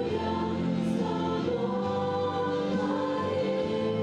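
A group of young women singing a church song in harmony into microphones, in long held notes.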